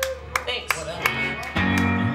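Live band playing loosely on a small stage: plucked guitar and string notes with sharp clicks, and a deep bass note coming in about a second and a half in.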